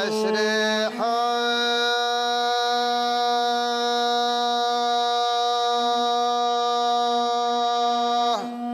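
A man singing a Bedouin-style song to a bowed rababa, the single-string spike fiddle of the Gulf. A short sung phrase opens, then from about a second in a single note is held steadily to the end, with the rababa's steady tone underneath throughout.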